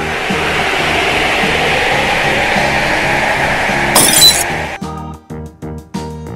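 Cartoon transformation sound effect over children's background music: a steady rushing whoosh that ends about four seconds in with a brief bright, glassy tinkle.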